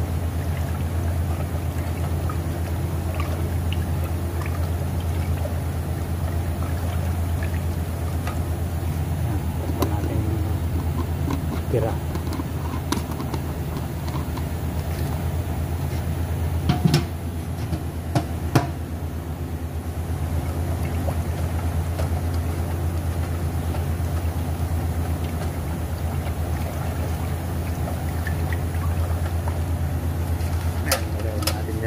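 Gold powder and sanding sealer being stirred in a metal paint can with a flat wooden stick, over a steady low machine hum. A few sharp knocks come a little past halfway.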